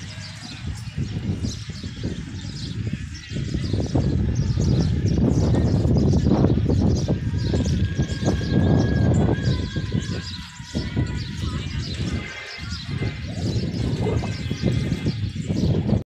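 Outdoor ambience of small birds chirping repeatedly, over a loud, uneven low rumble on the microphone that swells and fades.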